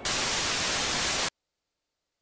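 Television static: a loud, even hiss of white noise lasting about a second and a quarter, cutting off suddenly into dead silence. It marks a channel change.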